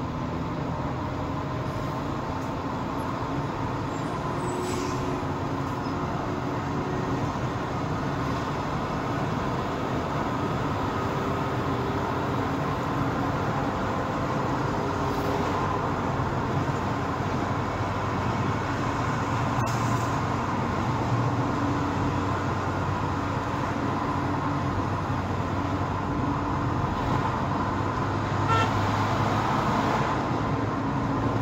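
Steady road and engine noise inside a car cruising on a motorway, growing slightly louder, with a few faint clicks.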